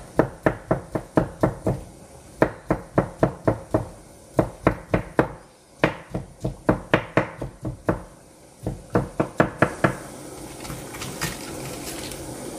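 Knife chopping on a cutting board: quick, even strokes of about four to five a second in short runs, with brief pauses between them. About ten seconds in the chopping stops, leaving a low steady hiss with a few light clicks.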